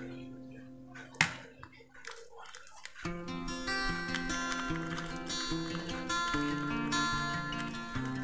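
Background music, a plucked guitar tune, comes in about three seconds in. Before it there is a quiet stretch with one sharp click.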